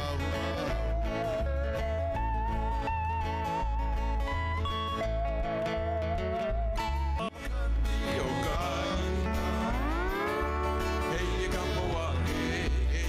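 Live Hawaiian trio music. A lap steel guitar plays a wavering, vibrato-laden melody over strummed acoustic guitar and a pulsing electric bass line, and about ten seconds in comes a long upward slide.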